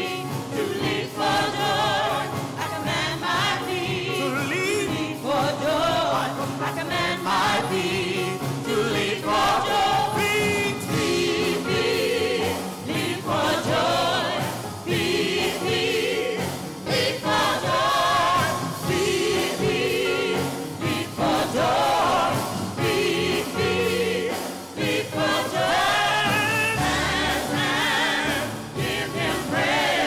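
Gospel praise team of several men and women singing together into microphones, their voices wavering in pitch as they hold notes, over sustained keyboard chords.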